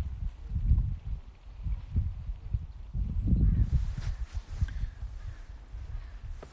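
Wind buffeting the phone's microphone in irregular low gusts, with a fainter outdoor hiss rising in about halfway through.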